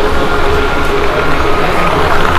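Loud, steady city street noise with a low rumble underneath and a few faint held tones above it.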